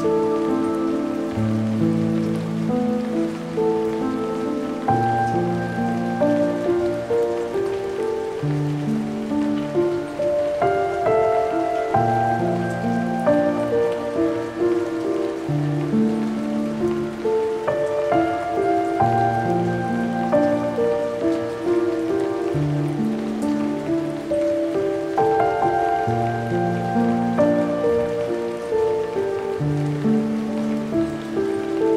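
Slow, melancholic piano music, sustained chords changing every second or two, over a steady bed of rain sound.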